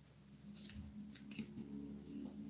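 Faint rustling of a satin ribbon and paper card being handled as a bow is tied, over a low steady hum.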